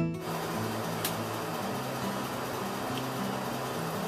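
Acoustic guitar music cuts off right at the start, leaving a steady background hiss with a low hum, and one faint click about a second in.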